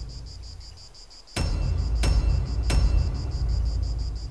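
Crickets chirping steadily in an even pulsing rhythm. About a third of the way in come three deep booming hits about two-thirds of a second apart, each followed by a low rumble.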